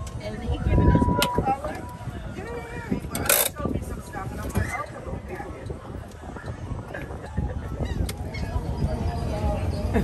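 Running noise of a moving boardwalk tram with wind rumbling on the microphone. There is a short steady tone about a second in and a louder sharp sound a little after three seconds, over the voices of people around.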